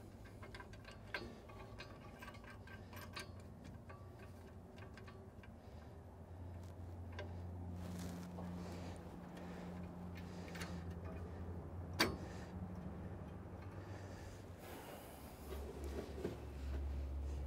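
Faint, scattered metal clicks and taps from hands working among the knives inside a John Deere 3960 forage harvester's cutterhead while the cracker plate clearance is felt, with one sharper click about twelve seconds in. A low steady hum comes in about halfway through and again near the end.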